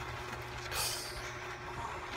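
Quiet room background: a steady low hum with a brief soft hiss about a second in.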